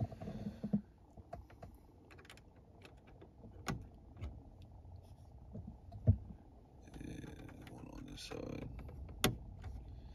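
Hard plastic clicks and taps as bulbs are pushed into the sockets of a 2003 Mercury Grand Marquis overhead dome light console. About six seconds in comes a single louder knock as a hand presses on the console, and near the end a stretch of rustling and scraping.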